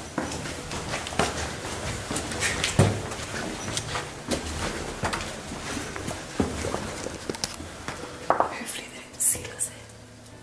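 Footsteps of boots climbing stone stairs and walking on: a series of irregular knocks and scuffs, roughly one or two a second.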